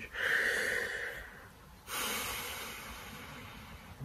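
A man's two long, noisy breaths, the first about a second and a half long and the second about two seconds.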